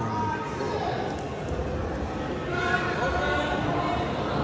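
Spectators and coaches talking over one another in a school gym, with no single clear speaker, growing a little louder about two and a half seconds in.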